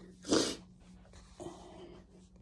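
A woman's short, loud burst of breath, about half a second long, a few tenths of a second in, with a fainter breathy sound near the end.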